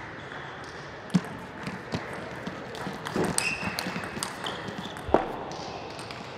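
Table tennis rally: a celluloid-type ball clicking off rubber-faced bats and the table, a handful of sharp clicks at uneven spacing, the loudest near the end. A brief squeak of shoes on the court floor comes midway.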